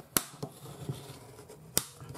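Two sharp clicks about a second and a half apart as a bone folder is picked up and set down against a cutting mat, with a faint rustle of the craft card between.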